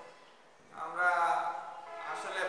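Only speech: a man lecturing, starting again after a brief pause.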